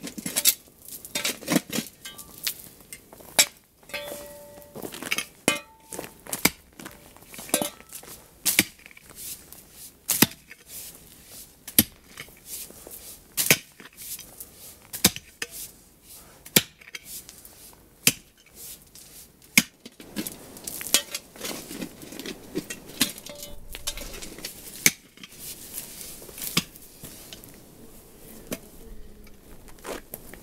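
A metal digging tool striking stony ground again and again, each blow a sharp clink, about one a second at an irregular pace. The blows thin out and soften over the last third.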